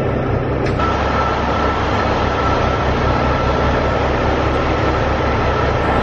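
LiftMaster commercial overhead door operator switched to open: a click about a second in, then the motor runs with a steady whine as the door goes up. A steady low rumble runs underneath throughout.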